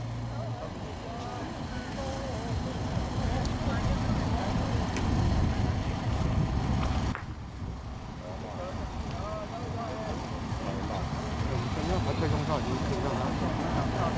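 Steady low outdoor rumble of wind and road traffic, with scattered distant voices talking. The rumble drops off suddenly about seven seconds in.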